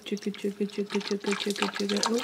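Liquid laundry detergent glugging out of a bottle as it is poured into a washing machine's detergent drawer: a quick, even gurgle of about seven or eight glugs a second.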